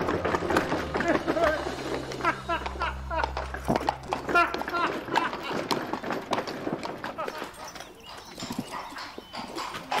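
Cart horse's hooves clip-clopping on cobblestones as it walks, a run of sharp knocks through the whole stretch.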